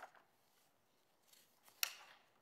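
Paper sheets being handled and leafed through close to a desk microphone: a small click at the start, faint rustling, and one sharp snap near the end.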